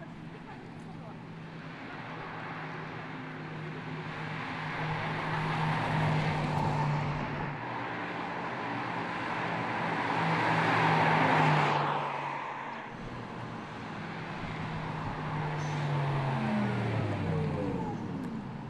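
Audi R8 e-tron electric sports car driving past: mostly tyre and road noise that builds to a peak about eleven seconds in and then fades, over a low steady hum. Near the end a whine sweeps down in pitch.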